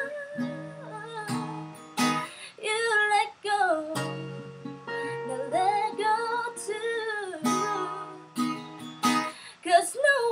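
A woman singing to her own acoustic guitar, strumming slow chords under a sung melody with long held, sliding notes.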